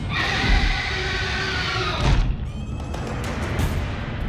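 A dragon's screech, one long cry lasting about two seconds and slowly falling in pitch, over dramatic orchestral film music. Shorter falling shrieks and sharp hits follow in the second half.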